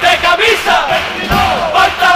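An all-male chirigota chorus singing loudly together, half shouted, with guitar accompaniment and a low drum thump about a second and a half in.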